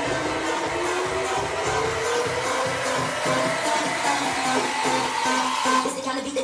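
Electronic dance music playing loud in a nightclub, at a build-up: a synth sweep climbs steadily in pitch over a regular beat, with little bass.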